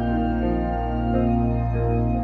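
Church organ playing slow, sustained chords over a held low pedal note, the upper voices moving to new notes a few times.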